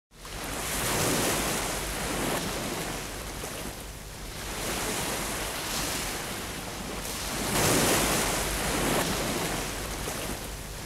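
Sea waves washing, a rushing noise of water that swells and eases several times.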